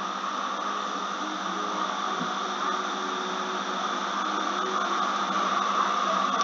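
Steady background hiss with a low electrical hum underneath, unchanging throughout.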